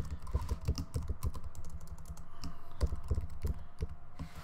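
Typing on a computer keyboard: a quick, uneven run of key clicks spelling out a short phrase, over a low steady hum.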